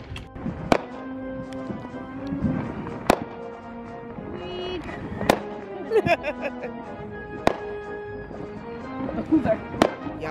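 Background music with held tones, over five sharp firework bangs spaced about two seconds apart.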